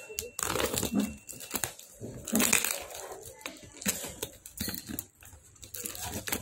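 A tape-sealed cardboard parcel and its plastic wrapping handled by hand: irregular crinkling and rustling, with scattered scrapes and taps.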